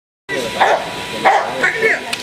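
A dog barking in short bursts, about three times, with a person's voice, cutting in suddenly just after the start.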